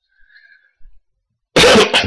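A man coughing once, loudly, about a second and a half in.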